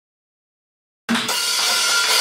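Silence, then about halfway through the live rock band's sound cuts in suddenly: guitars and keyboard holding a ringing chord over a wash of drum cymbals, just before the count-in to the song.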